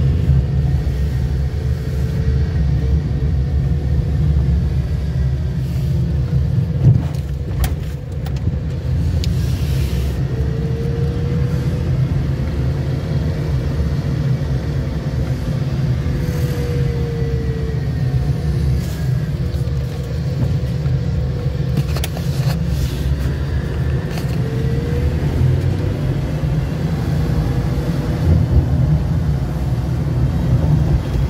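Car engine and tyre rumble heard from inside the cabin while driving, a steady low rumble with the engine note slowly rising and falling as the car slows and picks up speed. A brief knock about seven seconds in.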